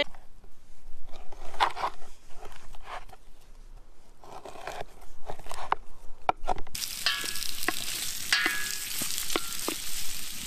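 A knife slicing through a slab of seasoned pork fat on a wooden board, in a series of separate cuts. About seven seconds in, diced pork fat starts sizzling with sharp pops in a cauldron over a wood fire as it is stirred with a wooden spoon, rendering in its own fat.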